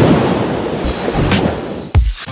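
Rushing ocean-wave sound effect with music, loudest at the start and easing off, ending in a sharp hit just before the end.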